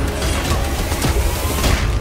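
Action-film fight soundtrack: a quick run of hits and impacts layered over a loud music score with a heavy, steady bass.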